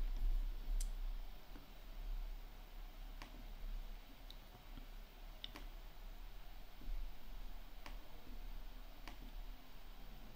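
Faint, scattered clicks, about eight over several seconds, over a low steady hum.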